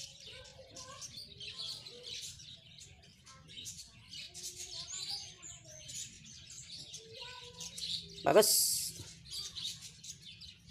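Small birds chirping in the background: many short, high chirps through the whole stretch, with a few lower whistled notes. A single spoken word cuts in near the end.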